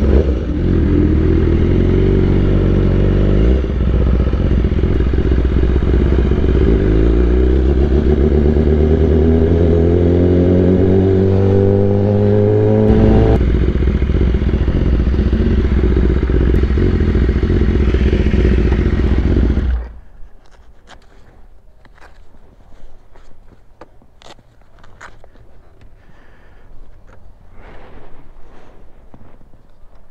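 BMW S1000RR inline-four motorcycle engine, fitted with an Akrapovic exhaust, running under the rider: its pitch climbs steadily for several seconds as it accelerates, drops back and runs lower, then cuts off suddenly about twenty seconds in. Quiet clicks and scrapes of handling follow.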